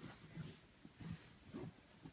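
Faint rustling and soft bumps of bed sheets being pulled and untucked from the mattress at the foot of a bed, in a few short bursts.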